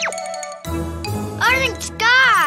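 Cartoon soundtrack: a quick falling whistle-like glide at the start with a tinkling jingle, over light children's music. About one and a half seconds in, a short wordless baby-voice exclamation rises and falls.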